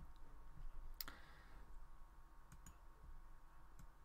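A few faint clicks of computer input, the clearest about a second in and a couple more later, over a low steady hum.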